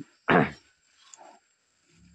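A dog barks once, short and sharp, about a third of a second in.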